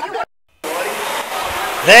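Several rowing ergometers being rowed hard, their fan flywheels giving a steady whooshing rush. It starts about half a second in, after a brief dead gap.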